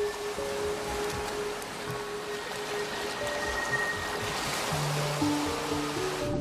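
Soft background music of long held notes over the steady rush of shallow surf washing in, the water sound growing a little fuller near the end.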